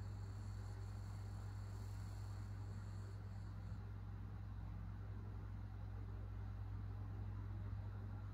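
Steady low hum with a faint even hiss under it: quiet room tone with no distinct sound events.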